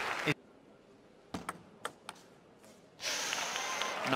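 A few sharp, quiet clicks of a table tennis ball being struck and bouncing on the table in a short rally, then audience applause starting about three seconds in as the point ends.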